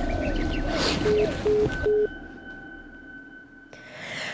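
Three short, evenly spaced beeps of the same pitch from a mobile phone about a second in, the tone of a call being hung up, over outdoor background noise with small bird chirps. After about two seconds the sound drops to quiet room tone with a thin steady high tone.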